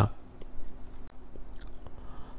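A pause between spoken sentences: low background hiss with a few faint small clicks and a faint steady hum.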